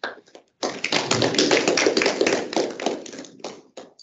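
Audience applauding, a dense patter of many hand claps that starts about half a second in and dies away near the end.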